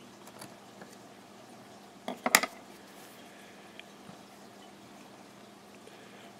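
Fly-tying scissors and tools handled at the vise: quiet room tone broken by a brief cluster of sharp clicks a little over two seconds in.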